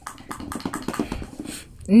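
Light, irregular clicks and taps from handling a small electric sewing machine and its fabric. The machine's motor does not run: it is not working.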